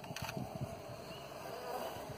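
Honeybees buzzing in a steady hum, with a faint knock or two near the start.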